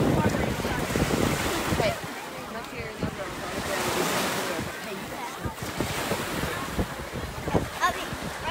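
Surf washing onto a beach, the hiss swelling and fading about halfway through, with wind buffeting the microphone most heavily in the first couple of seconds.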